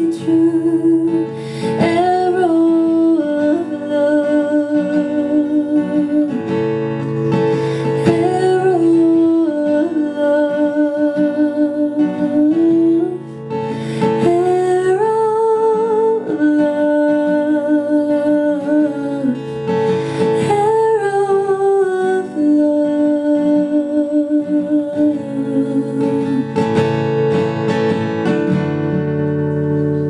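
A woman's voice singing a slow, held melody live over several acoustic guitars.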